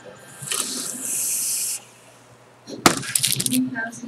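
A sub-ohm vape, a 0.19 ohm coil fired at about 130 watts, drawn on in one long hiss that lasts about a second and a half. After a short pause there is a sharp click, then a breathy exhale of vapour.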